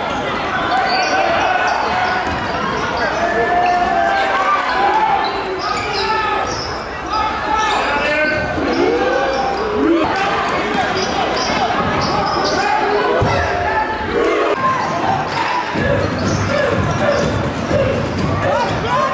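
Live gym sound of a basketball game: a basketball bouncing on a hardwood court under overlapping shouts and chatter from players and spectators, echoing in a large hall.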